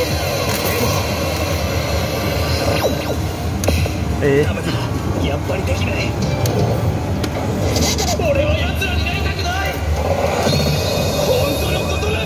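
A Highschool of the Dead pachislot machine playing an anime cutscene through its speakers: character voices speaking lines over background music, against a steady low rumble of game-centre noise.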